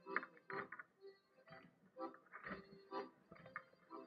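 Short, irregular creaks and rattles from the mulassa, a festival mule figure carrying the camera, as it is moved about.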